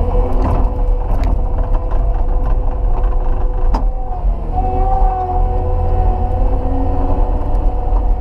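Cat 289D compact track loader's diesel engine running steadily under load, heard from inside the cab as a low drone with a steady whine, with a few sharp knocks in the first half.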